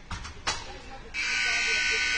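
Arena scoreboard buzzer sounding, starting suddenly about a second in and holding one steady tone, just after a sharp knock.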